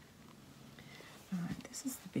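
A woman murmuring half-whispered to herself. It is faint at first, then short soft vocal sounds with a hiss begin about halfway in.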